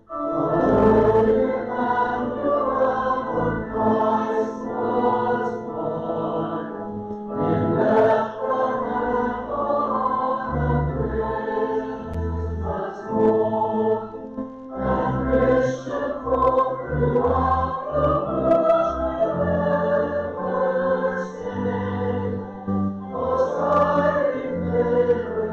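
Voices singing a hymn together in phrases of several seconds, with short breaks between lines, over sustained low notes.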